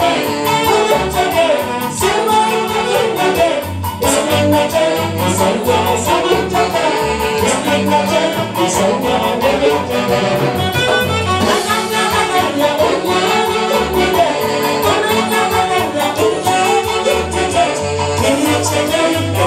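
A live band with saxophones playing dance music with a steady beat, with a singer's voice over it.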